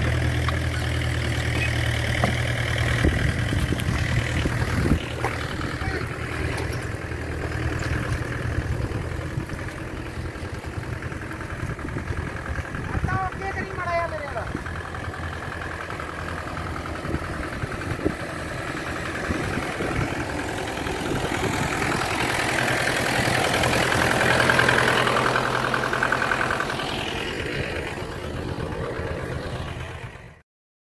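Farm tractor's diesel engine running steadily under load as it pulls on a tow chain, its hum growing fainter in the last third.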